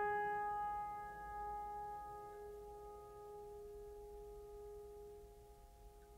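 A single musical note, struck just before and ringing on, fading slowly and steadily.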